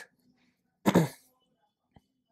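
A man clears his throat once, about a second in. A soft single click follows near the end.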